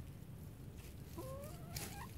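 A backyard chicken giving one drawn-out call, a little over a second in, rising slightly in pitch and ending on a sharper, higher note.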